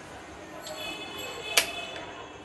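A single sharp click about one and a half seconds in, over faint background sound.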